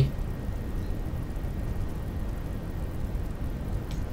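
Steady low-pitched background noise with no distinct events, the room and microphone noise of a voice-over recording between phrases.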